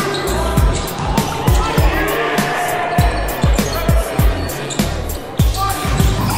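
Background music with a heavy bass-drum beat and crisp high ticks of hi-hats.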